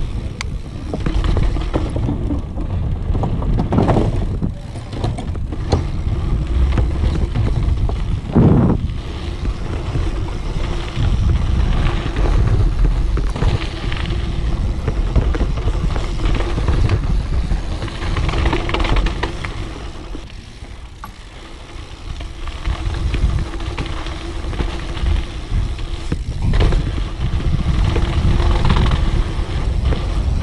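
A dirt jump bike ridden fast downhill on a trail: wind buffeting the camera microphone, tyres rolling over dirt and wooden features, and the bike rattling and knocking over bumps, with a quieter stretch a little past the middle.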